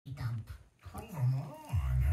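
A deep cartoon voice making short wordless vocal sounds, heard through a television's speakers in a small room.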